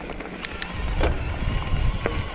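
Electric mountain bike rolling over loose, stony gravel singletrack: a steady low rumble of tyres and wind on the helmet microphone, with a faint motor whine and a few sharp clicks and rattles from the bike about half a second and a second in.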